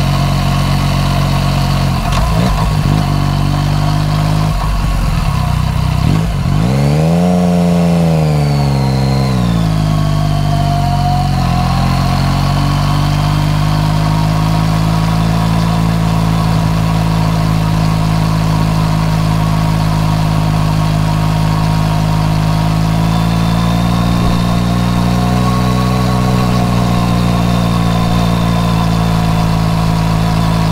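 Yamaha MT-09 Tracer's inline three-cylinder engine running through an Akrapovič exhaust, heard from the rider's seat. The revs rise and fall once several seconds in, then the engine runs steadily at a gentle road speed.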